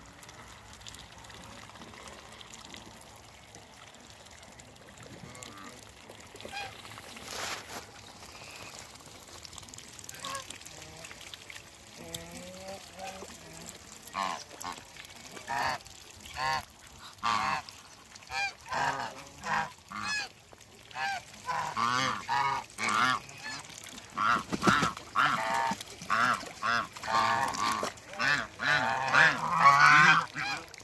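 A flock of domestic geese honking: after a quiet start the calls begin about halfway through, repeating about once or twice a second and growing louder and more crowded toward the end.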